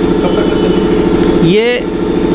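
An engine idling steadily close by, with an even low, pulsing running sound that fills the pause; a man's voice comes in near the end.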